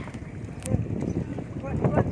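People talking outdoors over a steady low rumble of wind on the microphone, with one sharp click a little over half a second in.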